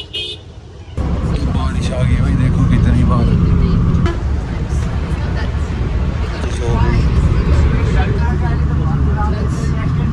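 Tourist bus engine and road rumble heard from inside the cabin, a steady low drone, with passengers' voices in the background.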